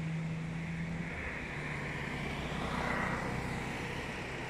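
A distant engine droning: a low steady hum that drops out about a second in, then a rushing noise that swells about three seconds in and eases off.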